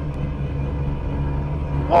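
A 1987 Yamaha Inviter snowmobile's two-stroke engine running steadily at trail-cruising speed, heard from the rider's seat.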